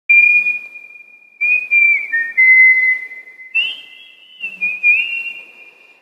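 A person whistling a melody in several phrases, the pitch sliding between notes, with a little breath noise.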